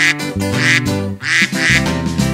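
Cheerful children's-song instrumental music with about four cartoon duck quacks spread across it.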